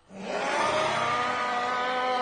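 An infected, vampire-like film creature screaming: one long, harsh screech that starts suddenly, rises in pitch at first and then holds steady.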